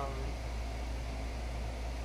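A drawn-out spoken "um" trails off just after the start. After it comes a steady low hum and an even background hiss, with no other event.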